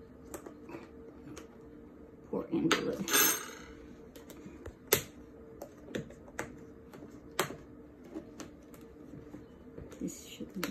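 Scattered clicks and taps of a plastic food container and its snap-on lid being handled and pried at. A louder rustling, scraping stretch comes about two and a half seconds in, over a faint steady low hum.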